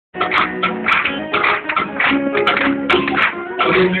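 Live acoustic band playing the opening of a song, a rhythmic strummed-guitar accompaniment with held notes under it; a voice starts singing at the very end.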